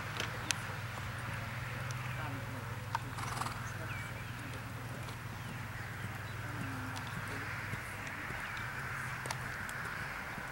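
Steady outdoor background noise: a low hum and an even hiss, broken by a few sharp, isolated clicks.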